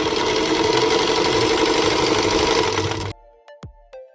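Singer Featherweight 221 sewing machine running at speed, stitching through fabric with a steady, dense whirr. It cuts off suddenly about three seconds in, and quieter music with an even beat follows.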